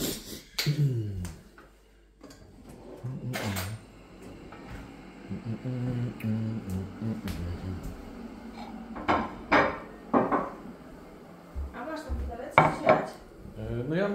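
Dishes and cutlery clinking and knocking in a kitchen: scattered sharp clinks, with a cluster of them in the last few seconds.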